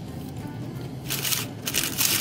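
Crumpled paper fast-food wrappers rustling as a hand digs through them: two short bursts about a second in and near the end, over faint background music.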